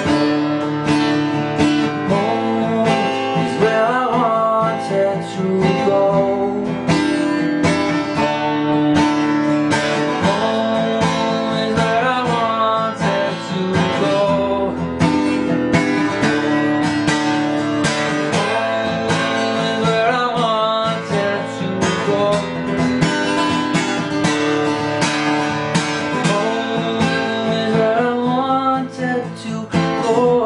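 Strummed acoustic guitar accompanying a man singing. The vocal line rises and falls in a phrase that comes round about every eight seconds.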